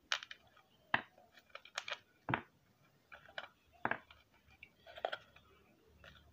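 Scattered small clicks and taps as a plastic gearbox housing is handled and its small steel screws are taken out and set down, about half a dozen separate faint clicks with quiet between them.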